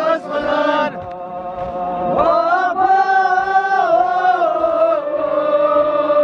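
Men chanting a nauha, a Shia mourning elegy, in a slow lament. A phrase ends about a second in, then from about two seconds the voices hold long, drawn-out notes.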